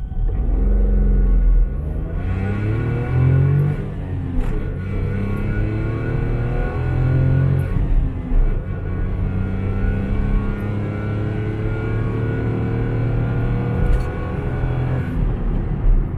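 Perodua Axia's three-cylinder engine, breathing through a stainless steel 2-1 extractor header, running under hard acceleration, heard from inside the cabin. The engine note rises, drops at an upshift about four seconds in, then climbs steadily again.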